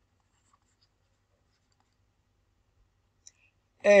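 Mostly near silence, with faint scratches and a small tap of a stylus writing on a screen. A man's voice starts right at the end.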